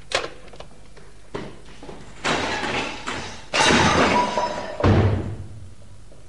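A commotion during a chase: a knock, then two long crashing clatters about two and three and a half seconds in, and a heavy thud near the end.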